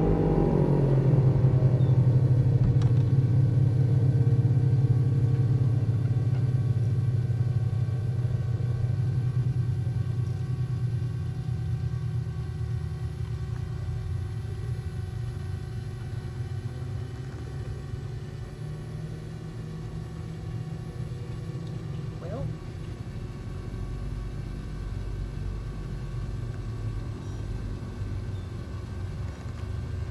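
Low, steady boat engine rumble that fades gradually over the first dozen seconds, then holds steady at a lower level.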